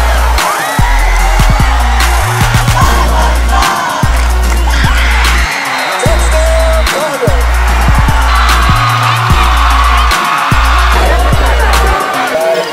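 Hip-hop backing track with long heavy bass notes that drop out and come back every second or two, fast hi-hat ticks and a vocal line over them.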